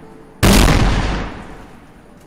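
A large firecracker blast: one sudden, very loud bang about half a second in, dying away slowly over about a second and a half.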